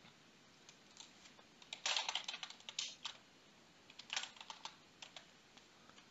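Faint typing on a computer keyboard, in two short bursts of keystrokes.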